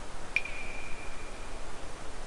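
A single high bell-like chime struck once about a third of a second in, its pure tone ringing and fading over about a second, over a steady hiss.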